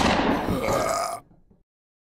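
A short sound effect that starts sharply and fades out over about a second and a half, then silence.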